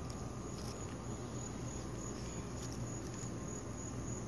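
Steady, quiet, high-pitched chorus of insects.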